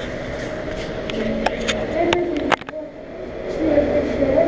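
Background chatter of other people over a steady hum, with a few sharp clicks about halfway through, typical of a handheld camera being moved.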